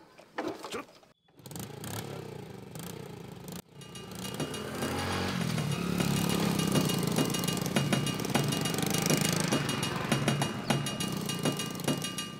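A small 50cc motorcycle with a loud engine starting and running as it rides off. Background music joins in, and everything gets louder from about four seconds in.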